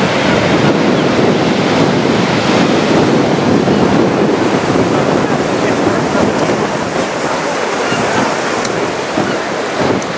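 Heavy storm surf breaking and churning against a sea wall, with wind buffeting the microphone. It is a dense, steady roar that eases a little past the halfway point.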